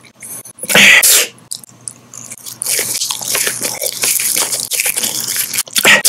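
Close-miked wet mouth sounds of chewing soft gummy candy, crackly and smacking, with two short, very loud bursts: one about a second in and one at the end.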